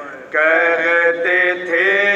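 Men's voices chanting a nauha, an Urdu mourning lament, into a microphone in long, sustained sung lines. There is a short break about a third of a second in, then the chant resumes at full strength.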